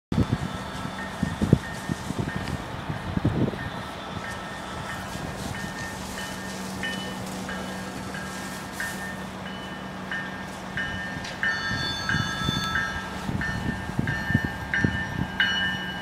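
An approaching passenger train heard at a station: a bell ringing in short strokes about every half second over a steady low hum, with a horn chord sounding for about a second and a half around twelve seconds in. A few handling thumps near the start.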